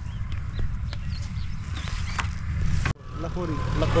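Outdoor field ambience: a steady low rumble with a few short high bird calls. It cuts off abruptly about three seconds in, and a man's voice starts up near the end.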